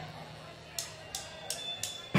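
A drum count-in: four short, sharp clicks evenly spaced about a third of a second apart, over a low steady amplifier hum.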